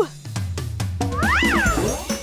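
Cartoon sound effects over children's background music: a held tone slides down at the very start, then a whistle-like tone glides up and back down, about a second and a half in, as the doll wobbles and tumbles.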